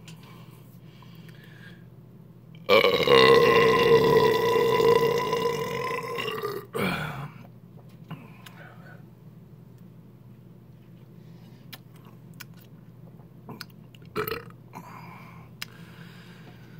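A man's long, loud burp of about four seconds, starting a few seconds in and slowly fading, after drinking carbonated malt liquor.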